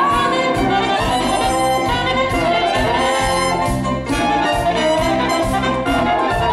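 A live Latin dance band playing an instrumental passage, a brass section carrying the melody over bass and drums with a steady beat.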